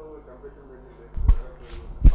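Faint, distant speech, broken by a dull, heavy thump a little over a second in and another right at the end.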